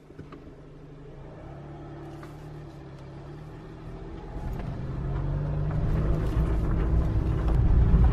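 Car driving slowly on a gravel driveway, heard from inside the cabin: a low engine and tyre rumble that grows steadily louder, with faint scattered crunches from the gravel.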